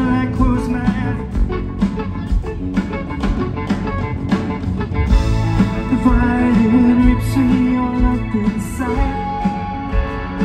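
A live rock band playing through a PA, with drums, electric bass and keyboards, and a male lead vocal singing over them.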